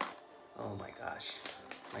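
A cardboard box being pried open by hand, with a click at the start and light handling noise. Twice over it comes a man's brief, soft wordless voice.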